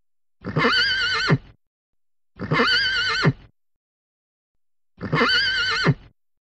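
A horse whinnying three times, the same whinny each time, about a second long with a wavering, quavering pitch, with silence between the calls.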